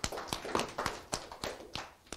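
Small audience applauding, with quick, uneven claps that thin out and die away near the end.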